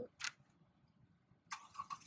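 Pen writing on a paper notebook: one short scratch just after the start, then a quick run of scratchy strokes near the end.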